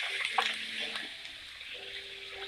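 Steady hiss of food frying in a wok on a gas hob, easing off slightly about halfway through.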